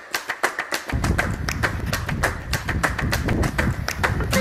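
Background music starting up: a run of quick percussive taps, about five or six a second, with a heavy low beat coming in about a second in.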